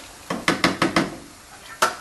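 A kitchen utensil clattering against a cooking pot on the stove: a quick run of five or six knocks about half a second in, then one more near the end.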